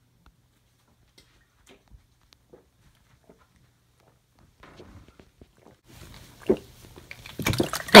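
Soda being gulped from a plastic bottle: about halfway in come faint swallows and liquid sloshing in the bottle, growing busier toward the end, with a sharp knock a couple of seconds before it. A loud gasped "ah" breaks out right at the end.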